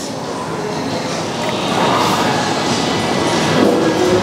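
Long spoon stirring halo-halo in a plastic cup, churning shaved ice, beans and jellies into ube ice cream: a steady scraping noise that grows a little louder in the second half.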